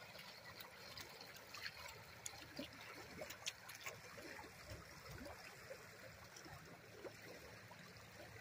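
Faint trickling of shallow river water running over a gravel bar, with scattered small splashes.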